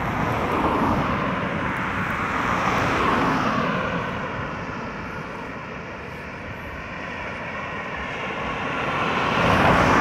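Cars passing on a nearby road, a broad rush of tyre and engine noise that swells about a second in, fades in the middle and grows loudest near the end as another car draws close.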